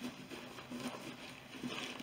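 Faint rubbing of a damp microfiber cloth wiping soap residue off Epi leather, with a few small ticks.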